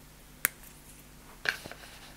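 Two short clicks over quiet room tone: a sharp one about half a second in and a softer one about a second later.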